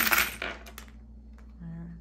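A handful of small metal charms and trinkets dropped onto a card spread on a table, clattering and clinking as they land, nearly all in the first half second, then a few light settling clicks.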